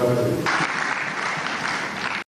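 An audience applauding, the clapping swelling in about half a second in over the tail of voices.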